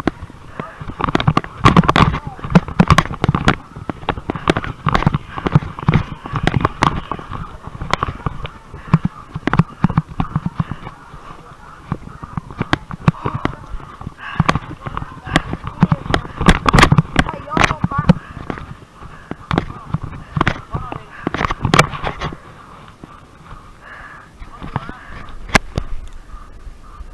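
Rapid, irregular thumps and rustling of hurried movement through brush and over dirt, with the recording jostled and knocked throughout; the knocks thin out for the last few seconds.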